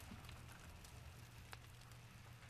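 Near silence: faint room tone with a low steady hum and a single faint click about one and a half seconds in.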